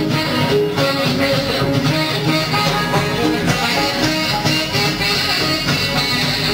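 Live band playing a blues-rock instrumental, steady and loud: saxophone, guitar, bass, drums and keyboards.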